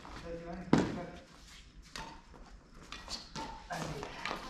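Badminton rackets striking a shuttlecock during a doubles rally: a loud, sharp hit about a second in, followed by lighter hits roughly a second apart.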